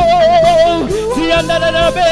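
A man singing a gospel song into a microphone, holding long notes with vibrato over instrumental accompaniment.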